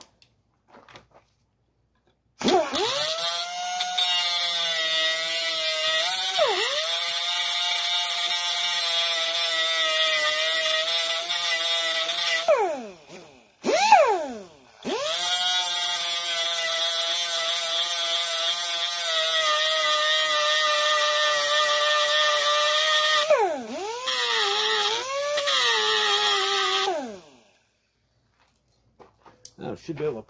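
Air-powered cut-off tool with a small abrasive disc grinding the bottom off the pivot rivet of a car vent window. It gives a high, steady whine with loud air hiss. It stops and restarts about halfway, dips in pitch several times as it bites, and winds down near the end.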